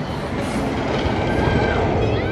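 A spinning wild mouse roller coaster car running over the steel track, a steady rolling rumble of its wheels, with a brief thin squeal about a second and a half in.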